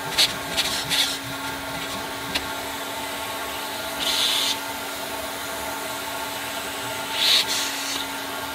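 Carpet extractor running with a steady motor hum while its wand is worked over car carpet, broken by short hissing bursts: three quick ones in the first second, a longer one about four seconds in and another near the end. A single sharp click comes between them.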